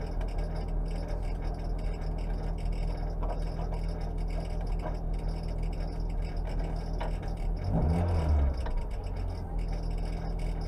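Peugeot 106 S16 rally car's 1.6-litre 16-valve four-cylinder engine idling steadily, heard from inside the stripped cabin, with one short blip of revs about eight seconds in.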